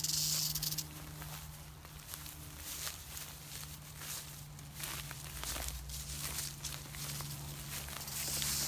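Western diamondback rattlesnake buzzing its tail rattle as a warning, fading out about a second in. After that come footsteps and crackling rustles in dry leaves and brush.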